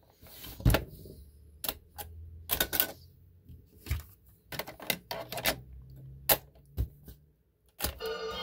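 A series of sharp plastic clicks and clacks from a 1970s Panasonic RQ-309S portable cassette recorder being handled: the cassette door opening and closing, a cassette going in, and the piano-key transport buttons being pressed.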